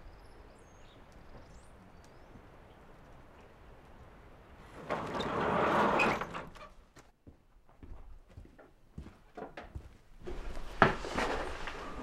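Handling noises in a straw-bedded wooden sheep pen: a swell of rustling about five seconds in, scattered light knocks, then more rustling with one sharp knock near the end.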